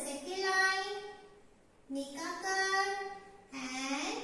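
A high voice singing in drawn-out, held notes: one phrase ending about a second in and another from about two seconds in, with a third starting near the end.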